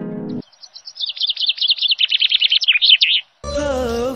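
A bird twittering in a fast run of chirps, about nine a second, on an otherwise silent soundtrack. A falling run of musical notes ends just before it, and a song with singing starts shortly before the end.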